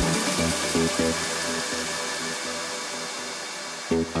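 Electronic dance music breakdown: the kick and bass drop out and a hissing white-noise wash slowly fades down over faint repeating synth notes. The full music comes back in with a hit just before the end.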